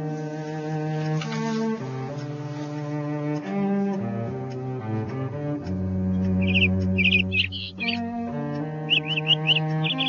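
Slow cello music with long bowed notes that change every second or two. From about six and a half seconds in, a small caged finch chirps over it in quick runs of high notes, briefly and then again near the end.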